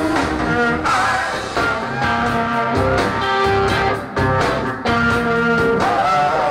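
Live electric band playing a song: electric guitar, bass guitar and drums, with held pitched notes over a steady beat.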